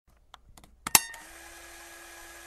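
A few faint ticks, then a single sharp, loud click about a second in that rings briefly, followed by a faint steady hum.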